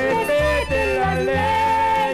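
A Mexican corrido playing from a vinyl LP: a wavering melody line that settles into a held note, over a bass and chord accompaniment keeping a steady rhythm.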